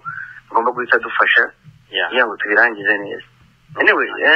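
Only speech: a voice talking in short phrases with pauses, over a faint steady low hum.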